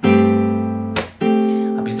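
Taylor 214ce-N nylon-string acoustic-electric guitar: a chord is played and left ringing. About a second in it is cut short and a second chord is played and rings on.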